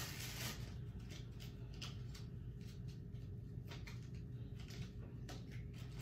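Faint, irregular taps and rustles of a person handling things nearby, over a low steady room hum.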